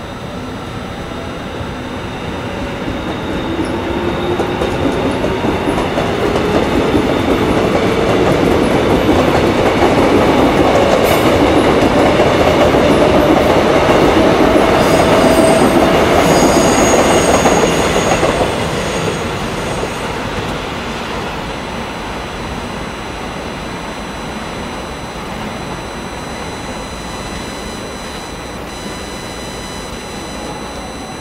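Korail 311000-series suburban electric multiple unit pulling away, its motor whine rising slowly in pitch as it gathers speed, over wheel-on-rail rumble. The sound peaks past the middle with a brief high wheel squeal, then falls away to a steadier, quieter rail noise.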